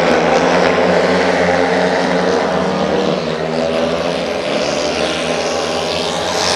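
Several speedway motorcycles racing around a dirt oval, their single-cylinder engines making a loud, steady, high engine note that eases slightly partway through.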